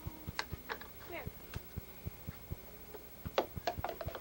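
A toddler's short babbling sounds, several in a row and loudest a little before the end, over a steady low ticking about four times a second.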